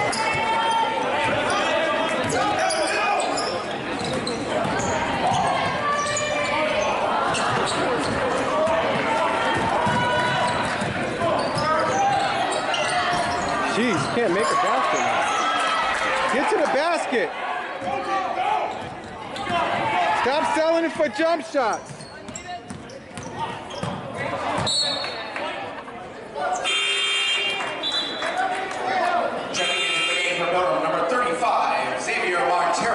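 Basketball dribbled on a hardwood gym floor during live play, with players and spectators calling out throughout.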